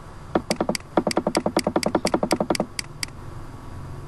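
Computer mouse scroll wheel clicking in quick runs of even ticks, about eight a second, with a short burst first and two last ticks near the end.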